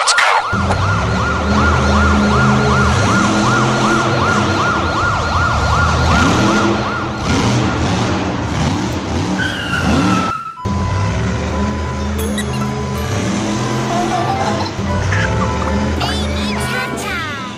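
A fast warbling siren, rising and falling about three times a second, over background music with a heavy bass; the siren stops about seven seconds in. After a brief break near the middle, the music carries on with a steady high beep.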